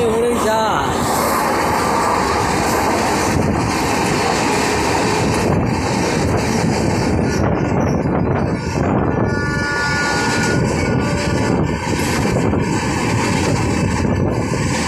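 Vaigai Express LHB passenger coaches running past at speed on the adjacent track: a loud, steady rail rumble with clickety-clack of wheels over the rail joints. A brief wavering tone sounds about half a second in.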